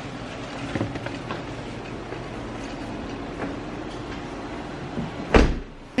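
Steady hum inside a car cabin, with a few small clicks and rustles, then a single heavy thump about five seconds in.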